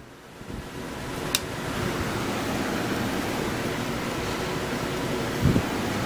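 Steady hiss-like noise that builds up over the first second and then holds level, with a single sharp click about a second and a half in and a short low thump near the end.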